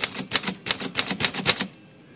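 Smith Corona standard portable manual typewriter typing a rapid run of about a dozen sharp type strikes in a second and a half, then stopping. It is test-typing lowercase o's to check that the freshly resoldered o type slug holds its alignment.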